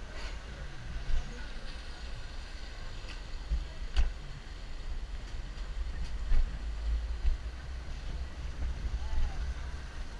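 Rail-guided bobsled car rolling along its track: a steady low rumble with a few sharp knocks along the way.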